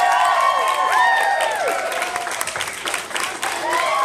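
Audience applauding and cheering at the end of a dance, with several high voices whooping over scattered claps.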